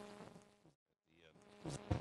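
Faint steady electrical hum between talks, which cuts out to dead silence for about a second at an edit, then faint room sound returns near the end.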